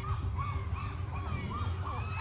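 A rapid series of short animal calls, each rising and falling in pitch, about four a second, over a low steady hum.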